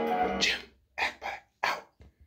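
Background music fades out in the first half second, then a dog barks three times in quick succession.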